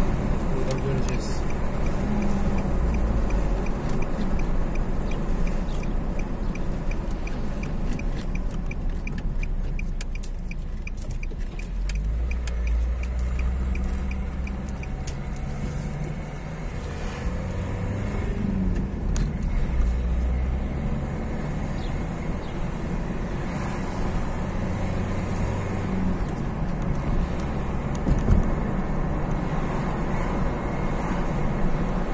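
Car cabin noise while driving: a steady low engine and tyre rumble. For roughly the first half a regular ticking runs along with it, the turn-signal indicator clicking, and then stops.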